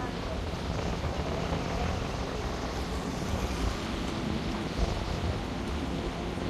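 Steady low rumble and hiss of wind buffeting the microphone, mixed with the road noise of a moving vehicle, with no distinct events.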